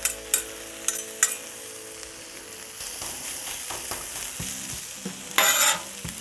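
Pulled pork sizzling on the hot steel flat-top griddle of a Camp Chef two-burner stove, with a few sharp clicks of a metal utensil on the plate in the first second and a longer scrape near the end.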